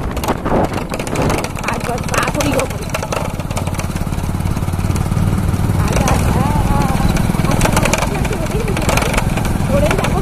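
A vehicle engine running steadily while on the move, with a continuous low hum.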